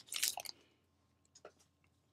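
Faint clicks and rustles of trading cards being slid through by hand in the first half second, then near silence with one faint tick about one and a half seconds in.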